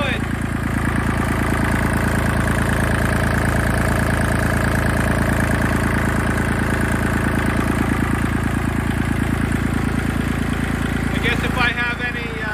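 Kubota D1703 three-cylinder direct-injection diesel in an L2501 tractor running steadily with an even, fast diesel clatter. Its injection timing has been advanced by removing one factory shim from the injection pump, and it has just been started for the first time after being put back together.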